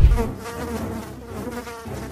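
A low thud, then flies buzzing.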